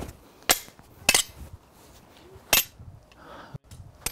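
Wooden training sword and dagger clacking together as they meet in blocks and strikes of an attack-and-defence drill: three sharp knocks, about half a second, one second and two and a half seconds in, then a few fainter clicks near the end.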